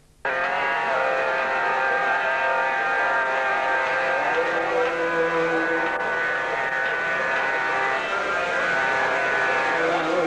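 Harmonium playing long, sustained reedy chords in an instrumental passage, the notes shifting only a few times. The sound drops out briefly at the very start.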